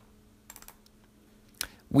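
A few faint clicks at the computer just after half a second in, then one sharper click near the end, over a faint steady hum.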